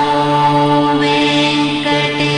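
Devotional mantra chanting, sung on long held notes that change about once a second.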